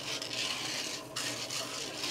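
Freshly roasted coffee beans rustling and scraping as they are stirred in a small drum roaster just after the roast is ended and the gas cut, over the steady run of the roaster's fan. The hiss of the beans thins out about a second in.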